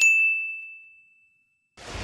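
Notification-bell 'ding' sound effect: one high clear tone struck at the start, ringing and fading away over about a second and a half. Near the end comes a short swoosh.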